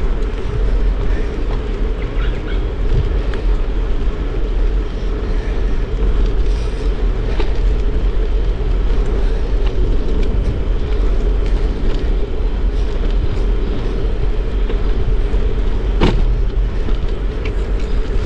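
Riding noise from a bicycle on a rough paved path: a steady rumble of tyres rolling and wind on the microphone, with scattered small ticks and one sharper click about sixteen seconds in.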